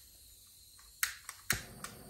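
A long-nosed utility lighter clicking at the nozzle of a propane hand torch to light it: a few sharp clicks, the loudest about a second and a half in, followed by the faint steady hiss of the lit torch flame.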